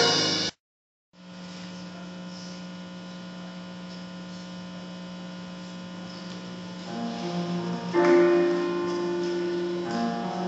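A jazz band's loud playing cuts off abruptly, followed by a moment of dead silence and then a steady electrical mains hum. About seven seconds in, instruments come in softly and a held note sounds as the band begins playing again.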